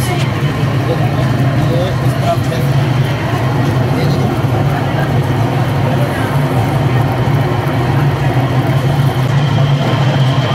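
Steady low motor hum of an electric potter's wheel spinning, with people talking in the background.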